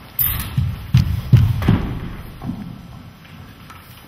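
A run of about five sharp low thumps and bumps in the first two seconds, then quieter: handling noise on a handheld microphone as it is passed to a questioner.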